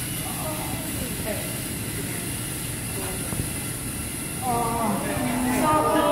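Children's voices chattering over a steady low mechanical rumble from many small LEGO robots driving across a hard floor. About four and a half seconds in, the voices grow louder and excited.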